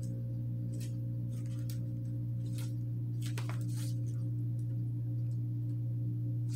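A steady low hum or drone with a few fainter, higher steady tones over it, unchanging throughout. A handful of faint, brief ticks come and go over it.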